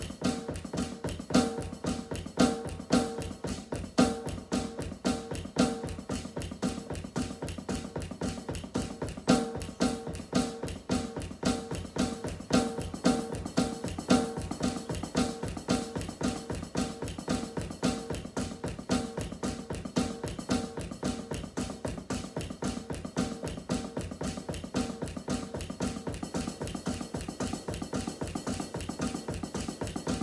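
Fast, steady drumming with sticks on an electronic drum kit, a dense run of strokes with a repeating pitched note woven through, accented more strongly in the first half.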